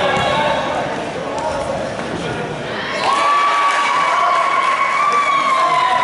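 Crowd chatter in a large hall. About halfway through, a single long, high-pitched shout starts with a quick upward swoop, is held for about three seconds and sags slightly in pitch at the end.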